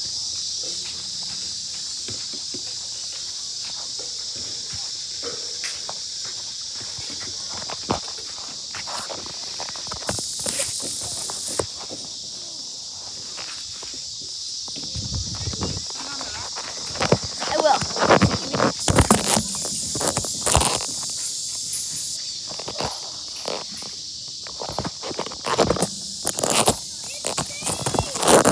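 Insects keeping up a steady high chorus, with the phone rubbing and bumping against clothing as it is carried. The handling noise turns into a run of loud knocks and rustles in the second half.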